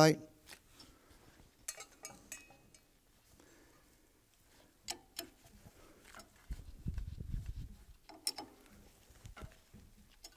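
A steel hex key clicking and ticking as it seats in and turns the socket-head bolts of a pump's shaft coupling, checking them for tightness: a few scattered small metal clicks. About six and a half seconds in, a low rumble of handling lasts for over a second.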